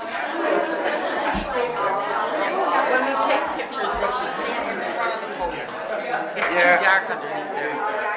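Several people chatting at once in a large room, their voices overlapping with no single speaker clear. A few dull low thumps sound under the talk.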